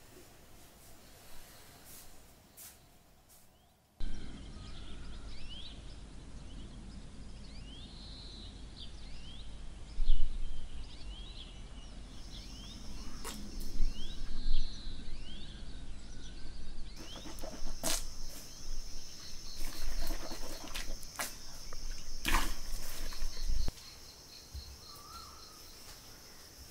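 Outdoor rural ambience that starts suddenly after a few quiet seconds: birds chirping in short rising calls, joined about halfway through by a steady high insect drone. A few sharp knocks stand out, and the ambience drops away near the end.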